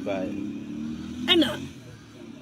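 A woman talking in short bursts over the steady low hum of a motor vehicle's engine. The hum fades out after about a second and a half.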